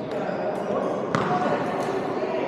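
Echoing sports-hall ambience of background voices, with a sharp smack about a second in, typical of a badminton racket striking a shuttlecock, and a couple of fainter taps.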